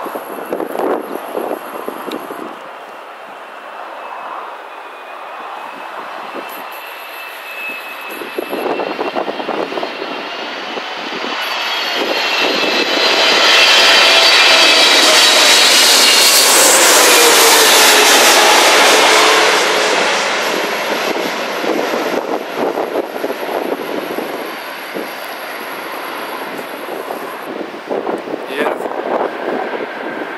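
Emirates Boeing 777 on short final passing low overhead with its landing gear down. Its engine whine builds to its loudest about halfway through, drops in pitch as the aircraft passes, then fades.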